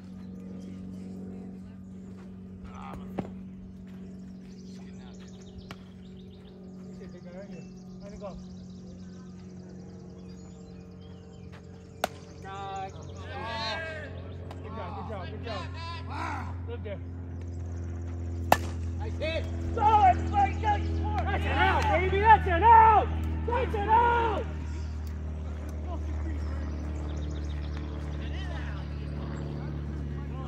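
Softball game: a few sharp cracks of the ball striking glove or bat, the loudest a little past halfway, followed by several men shouting and calling for a few seconds. A low steady hum runs underneath.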